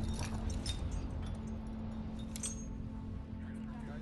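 A few light metallic clinks from a safety harness's buckles and fittings being handled, over a low steady rumble with a held low tone.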